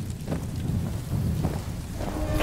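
Low, steady rumble of a fire burning in explosion wreckage, with a couple of faint crackles.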